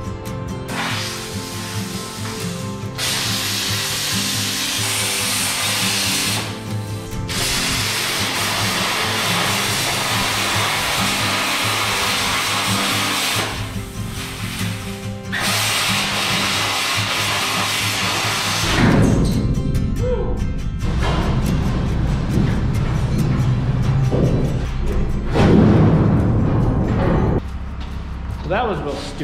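Plasma cutter cutting steel in several long hissing bursts of a few seconds each, stopping and restarting. After about two-thirds of the way through the cutting gives way to a heavy low rumble with louder knocks.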